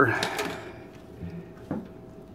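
Quiet handling of a small wired electrolysis setup, with one light click about three quarters of the way through.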